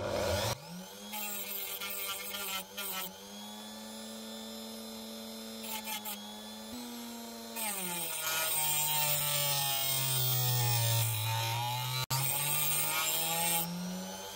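Dremel rotary tool running a thin cutting disc, grinding into a small stone held against it. The motor's hum drops in pitch while the stone is pressed in hard, and the grinding hiss is loudest in the second half. The pitch recovers near the end as the load comes off.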